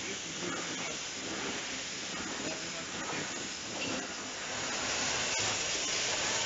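Bottling line machinery running: a steady hiss of motors, conveyors and air, with faint scattered clicks and one sharper click about five seconds in.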